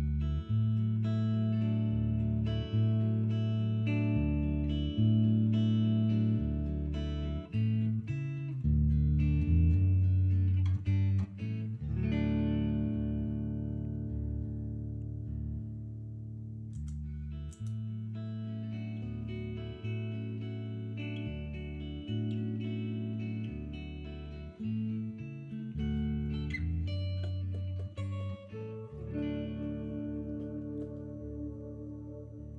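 Guitar played alone as an instrumental introduction, sustained notes over a low bass note that changes every second or two. The upper notes drop away for a few seconds midway, then the playing fills out again.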